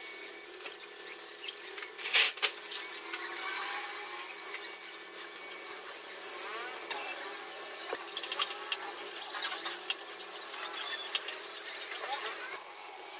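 Gravity-feed air spray gun hissing steadily as paint is sprayed onto a motorcycle fairing panel, with a short louder burst about two seconds in.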